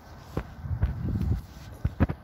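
Footsteps on grass close to the microphone, with low rustling and three sharp knocks.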